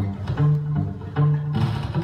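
Acoustic guitar played solo: plucked notes over a bass line that changes about every half second.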